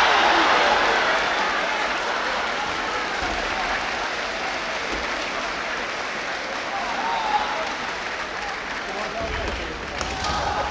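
Audience applause, loudest at the start and slowly dying away, with crowd chatter underneath.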